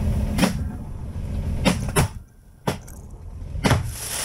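Fireworks going off inside a bus: about half a dozen sharp bangs at irregular intervals, with a quieter gap midway.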